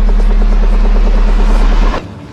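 Heavy deathstep electronic music: a deep sustained sub-bass note under a fast, stuttering synth texture and a rising hiss. It all cuts off suddenly near the end.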